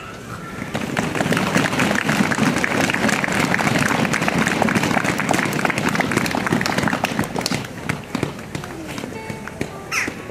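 Audience applauding: a dense patter of many hands clapping that goes on for about eight seconds and then dies away, with a few voices murmuring underneath.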